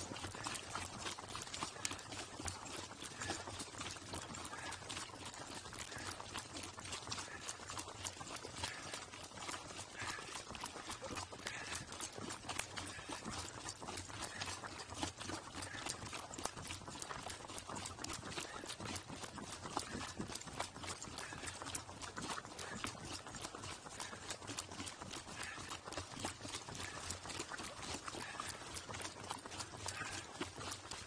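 Burro hooves clip-clopping steadily on a paved road, heard up close from the pack saddle the camera rides on, with a continuous run of small knocks and clatter.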